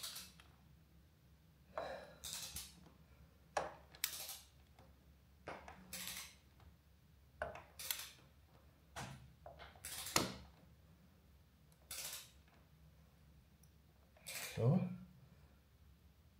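Ratchet torque wrench on an oil-filter wrench cap, worked in short strokes to tighten a new oil filter on a Suzuki SV650 to 20 Nm: faint metallic ratchet clicks and clinks about every one to two seconds, with a louder clack near the end.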